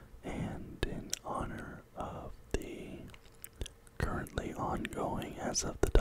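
A man whispering close into a microphone, with a few sharp clicks between words; the loudest click comes just before the end.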